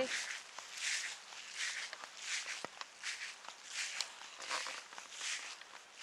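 A person's footsteps walking at a steady pace, soft swishing steps about every three-quarters of a second.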